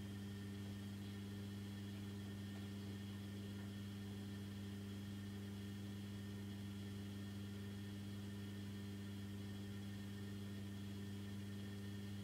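A steady low hum with faint hiss, unchanging throughout, with nothing else happening.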